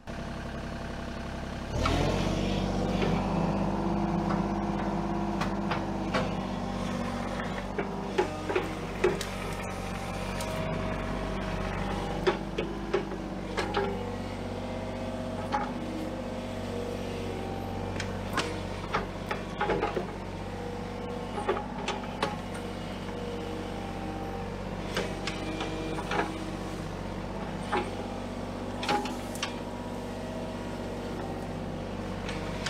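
Kubota mini excavator's diesel engine running steadily under load, picking up about two seconds in as the hydraulics work the bucket. Short knocks and clanks come now and then as the bucket pushes and scoops soil to backfill a trench.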